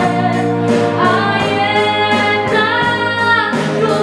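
Live performance of a female vocalist singing with a string orchestra, the voice holding long notes over sustained strings. A steady beat ticks along about three times a second.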